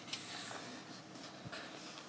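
A paper page of a colouring book being turned by hand: a soft rustle and slide of paper in the first second, then a light tap about one and a half seconds in.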